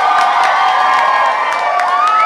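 Several young women screaming and squealing with excitement at close range, their high, held cries overlapping, over a cheering crowd.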